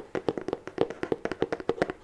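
Long fingernails tapping rapidly on a plastic Fa Men Xtra Cool shower gel bottle held close to the microphone, about ten crisp taps a second.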